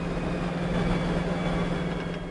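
A steady low hum with an even hiss, unchanging throughout.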